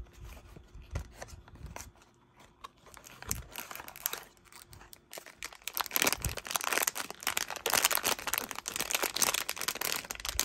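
Small cardboard blind box being handled, with light clicks and scrapes, then from about halfway a sealed foil blind-box bag crinkling loudly as hands work at it.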